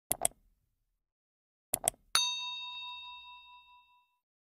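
Two pairs of quick clicks, then a single bell-like ding that rings out and fades over nearly two seconds: a chime sound effect marking a break between sections.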